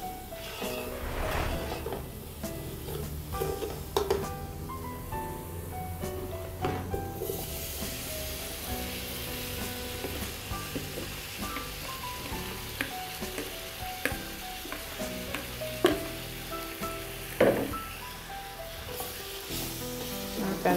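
Spices and oil sizzling in a pot as they are stirred with a spoon, with a few sharp knocks of the spoon against the pot. The sizzle grows brighter about seven seconds in, as diced fresh tomatoes go into the hot oil.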